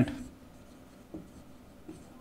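Marker pen writing on a whiteboard: a few faint strokes of the tip.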